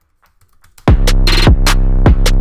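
Electronic hip-hop beat playing back from a DAW: a brief gap with a few faint clicks, then about a second in the drums and deep bass cut back in, kicks with a quick downward pitch drop and bright percussion hits over a sustained low bass.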